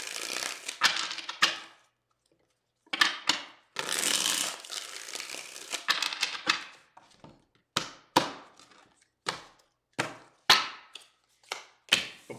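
A deck of tarot cards being shuffled by hand in several rustling bursts, then a run of short sharp card clicks in the second half.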